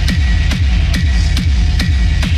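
Hard techno track: a heavy kick drum on every beat, a little more than two beats a second, with hi-hat ticks and a steady high synth tone over it.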